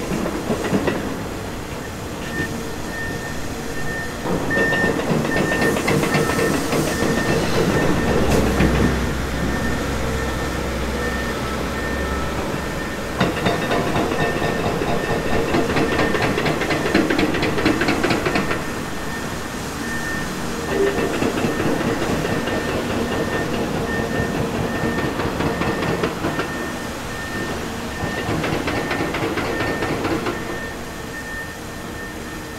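Heavy excavation machinery at work: a Caterpillar 336 hydraulic excavator runs and drops bucket loads of broken rock into a steel dump-truck body, giving two long rattling clatters, over the running of diesel engines. A truck's reverse alarm beeps evenly through much of it.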